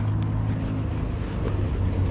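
Steady low hum of a motor vehicle engine running, over street background noise.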